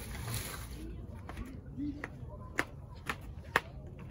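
White PVC pipes and plastic T-fittings knocking together and against concrete as they are handled, with three sharp clicks in the second half, the last the loudest.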